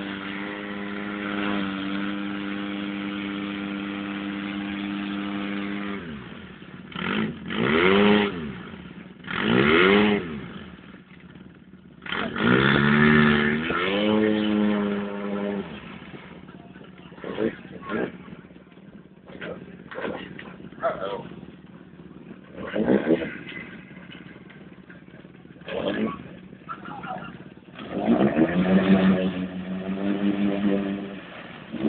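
Polaris RZR side-by-side engine revving while stuck in deep mud. It holds a steady high note for about six seconds, then comes in repeated rev bursts that rise and fall, a longer one partway through and short blips after, as the stuck machine tries to drive out.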